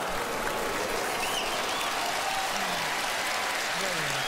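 Studio audience applauding, with scattered cheers, at a magic trick's reveal; the applause starts sharply just before and holds steady throughout.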